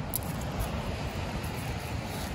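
Steady wind noise on the microphone outdoors: a low rumble under an even hiss, with no distinct knocks or calls.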